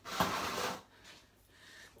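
A brief rustle of handling noise, about three-quarters of a second long, as the recording camera is moved, then quiet room tone.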